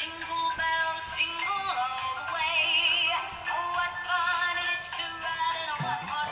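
Musical Christmas greeting card playing a sung Christmas song through its small built-in speaker, with a thin, high-pitched sound.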